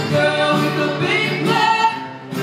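A woman singing a song into a microphone, accompanied by strummed acoustic guitars, in a live performance.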